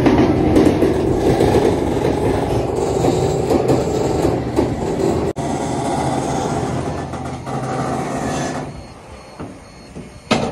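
Swivelling platform of a rail pocket wagon moving a semi-trailer back into line, with a loud steady mechanical rumble and grinding from the wagon's drive. The noise dies away about nine seconds in.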